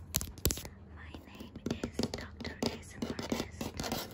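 Fingertips tapping and rubbing directly on a camera lens, giving quick, irregular taps with a rough, hissing rub between them.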